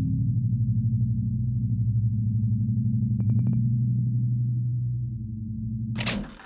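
Electric buzzing hum of a neon-sign animation sound effect, steady and low with a fast flicker, with a quick run of five short high beeps about three seconds in. It ends in a sudden burst of noise as the sign cuts out.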